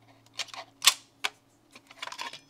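Several sharp clicks and taps of a flat-blade screwdriver tip against the plastic terminals of a DIN-rail power-supply module, the loudest about a second in, over a faint steady hum.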